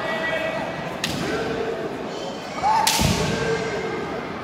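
Kendo fighters giving long, drawn-out kiai shouts, with sharp cracks of bamboo shinai striking about a second in and again, loudest, about three seconds in.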